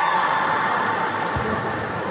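Sports-hall din at a table tennis match: a pitched sound fades away in the first half second, then the hall's general noise carries on with one dull thud about a second and a half in.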